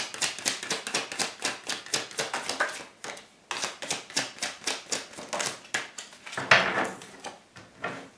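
A deck of tarot cards being shuffled by hand, the cards clicking rapidly against each other about eight times a second. There is a short break about three seconds in and a louder rustle about six and a half seconds in.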